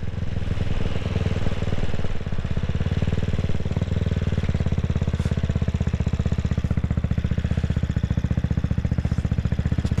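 2022 CCM Spitfire Six's 600cc single-cylinder engine running through its baffled twin exhausts. About four seconds in, as the bike slows, it settles into an even, rapid beat of firing pulses.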